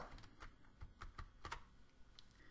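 About half a dozen faint, irregularly spaced clicks of a computer keyboard, made while switching from the slideshow to the spreadsheet.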